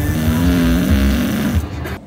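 A sleeping dog snoring: one loud, rough snore lasting nearly two seconds.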